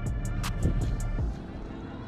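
Background music with a steady low bass line, a few sharp clicks in the first second, growing quieter in the second half.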